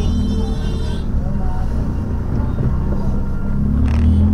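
Steady low engine and road rumble of a moving vehicle.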